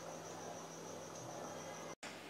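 Faint room tone: a low steady hiss with a thin, high-pitched whine and a low hum. It drops out for an instant at the very end.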